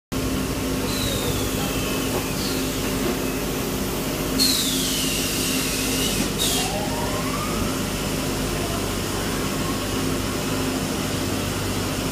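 Steady running hum of EPS foam production machinery, with a loud burst of hissing about four seconds in that lasts around two seconds. A few faint whistling glides in pitch come and go.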